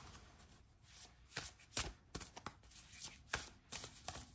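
A deck of oracle cards being shuffled by hand: a run of faint, irregular clicks and flicks as the cards slide and snap against each other.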